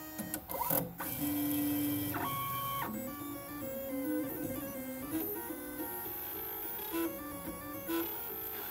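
Stepper motors of a belt-driven pen plotter whining at steady pitches as the carriage travels, the pitch gliding as it speeds up and slows. About three seconds in this changes to a quick run of short, shifting notes as the pen draws a curving line.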